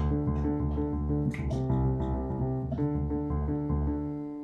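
Piano played with one hand in the lower register: a moving line of low notes, changing every fraction of a second. It ends on a held note that rings and fades.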